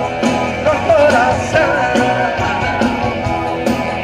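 Live band music from a sertanejo duo's stage show: electric guitars and keyboards playing an upbeat song, with a wavering melody line over a steady beat.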